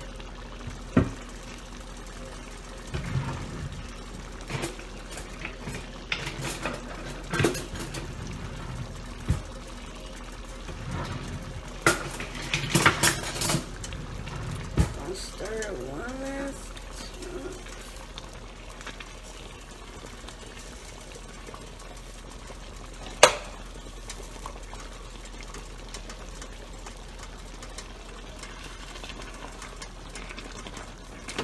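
A plastic ladle stirring thick, simmering chili in a pot, with scattered knocks, clicks and scrapes against the pot in irregular clusters and one sharper clink about two-thirds of the way through, over a faint steady hum.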